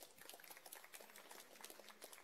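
Faint, thin applause from a small audience: many quick, irregular hand claps.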